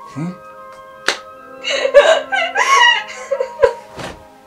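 Background film music with a single sharp smack about a second in, followed by a couple of seconds of a high-pitched voice making wordless laughing sounds.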